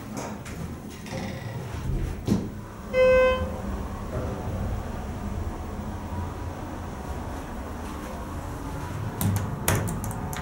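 Schindler 330a hydraulic elevator car with its doors closed and a steady low hum. About three seconds in comes a single short electronic beep, and near the end there are a few sharp clicks as the car's floor button is pressed.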